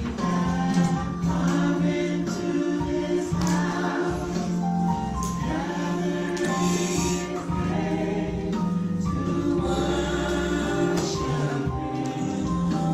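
Gospel music: a choir singing held notes with accompaniment.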